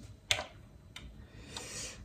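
Button presses on an Akai MPC One sampler: one sharp click about a third of a second in and a fainter one about a second in.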